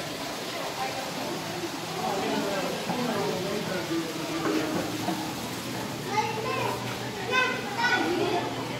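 Indistinct background chatter of people, children's voices among it, with no one speaking close to the microphone.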